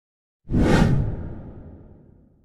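A whoosh sound effect for a logo intro. It comes in suddenly about half a second in, deep and full, and fades away slowly.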